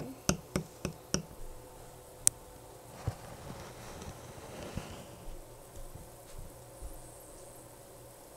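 About four light taps as glitter is shaken from its container into a bottle of clear hand sanitizer, then one sharp click a little after two seconds in. After that only faint handling noise and a few soft knocks over a faint steady hum.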